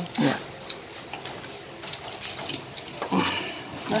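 Quiet table sounds of a meal: faint scattered clicks and crunches of people eating crispy rice-flour pancakes with chopsticks. A short spoken word comes just after the start, and murmured voices come near the end.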